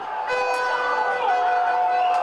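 Horns blown by fans, two or more held on steady notes, one of them dropping a little in pitch just past the middle, over crowd noise, in celebration of a goal just scored.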